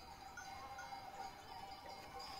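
Faint sounds of a grazing flock of sheep and goats: scattered distant bleats and the light tinkle of livestock bells, over a steady faint high hum.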